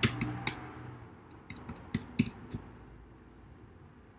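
Computer keyboard keys tapped in a short, uneven run of about ten clicks, typing a web address, with the taps thinning out after about two and a half seconds.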